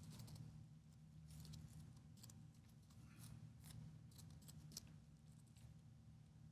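Faint clicks of typing on a computer keyboard, a dozen or so scattered key taps over a steady low room hum.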